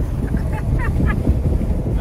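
Steady wind buffeting and road rumble inside a Jeep Wrangler driving at highway speed with a window open, loud and low. A few faint, brief vocal sounds come through about half a second to a second in.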